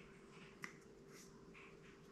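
Near silence with faint soft dabs of a paintbrush on wet canvas and one sharp little click just over half a second in.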